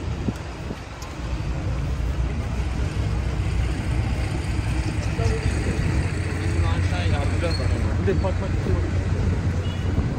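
Busy city street: a steady low rumble of road traffic, with passers-by talking nearby, their voices more prominent in the second half.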